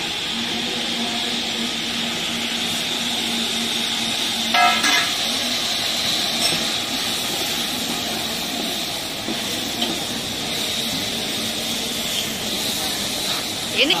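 Sliced onions sizzling in hot oil in a steel pot, a steady hiss with a low steady hum under it. A short pitched toot sounds about four and a half seconds in.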